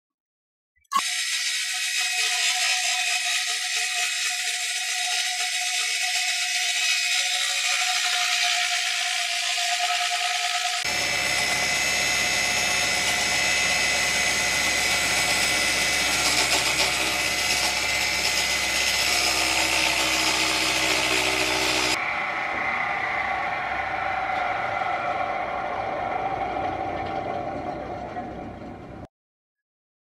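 Homemade table saw, its blade driven by a battery-powered motor, running and ripping a sheet of plywood along the fence. The sound is loud and steady and changes abruptly twice, about a third and about three quarters of the way in.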